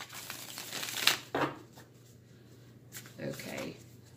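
A tarot deck being handled after a shuffle: soft rustles of the cards, with a sharp snap about a second in as the deck is tapped or squared, then quieter handling.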